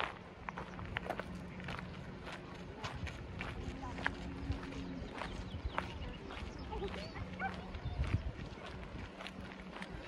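Footsteps and scattered sharp clicks over indistinct voices of people, with a steady low hum underneath.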